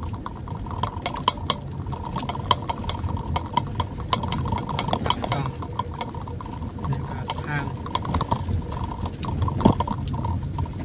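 Rain pattering on a vehicle's windshield and roof in many irregular small ticks, heard inside the cabin over the low rumble of the vehicle on the road.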